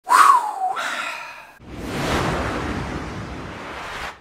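Intro sound effect: a brief tone that falls in pitch, then a long rushing whoosh that swells about a second and a half in and slowly eases off.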